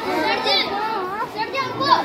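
Several people talking and calling out at once in high, raised voices that overlap, with no clear words.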